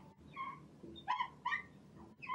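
Marker tip squeaking against a glass writing board in several short strokes as letters are written.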